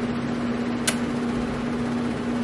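A steady hum at one pitch from a running fan or appliance, over a light hiss, with a single sharp click a little under a second in.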